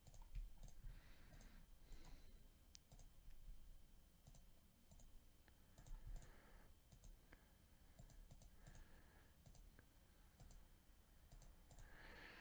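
Faint, scattered computer mouse clicks in near silence.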